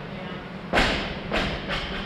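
A heavy thud about three-quarters of a second in, then two lighter thuds, from an athlete's body coming down onto rubber gym flooring during wall-walk reps.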